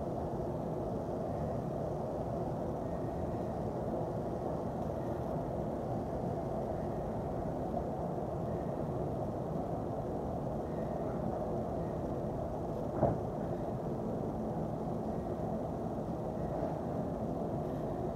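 Steady low rumbling background noise with no clear tone, and a single sharp knock about thirteen seconds in.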